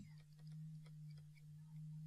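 Near silence: a faint steady electrical hum with a few faint ticks of a pen writing on a tablet.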